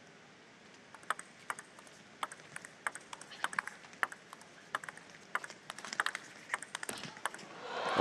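Table tennis rally: the plastic ball clicking off the paddles and the table in a quick, irregular string of sharp ticks, starting about a second in and stopping shortly before the end.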